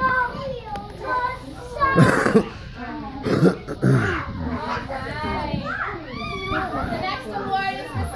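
Preschool children talking and playing, several young voices overlapping, with a couple of short, rough vocal outbursts about two and three and a half seconds in.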